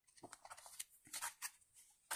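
Faint rustling of fingers brushing and rubbing a coloring book's paper page, a few soft scrapes, slightly louder just after a second in.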